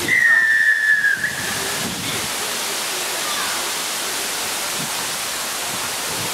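A referee's whistle blown once, a single blast about a second long that falls slightly in pitch. It is followed by a steady hiss of wind on the microphone.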